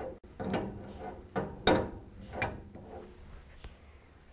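Metal clicks and knocks from tightening a compression fitting on copper tubing at a water control valve. There are about five separate knocks, the loudest near the middle.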